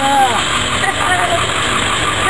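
A child's voice chanting, one drawn-out sing-song syllable that rises and falls at the start and a short vocal sound about a second in, over a steady rushing background noise.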